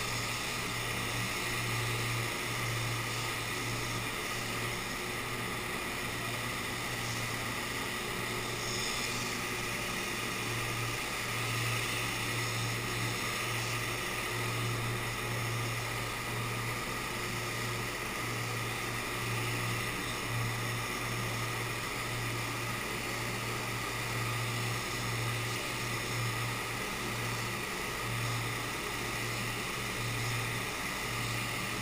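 Steady rush of air in a paint spray booth, from the booth's ventilation and the spray gun laying paint on the car body, with a low hum underneath that wavers on and off.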